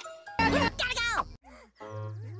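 A short jingle mixed with voices that cuts off abruptly about one and a half seconds in. It is followed by brief snatches of another clip.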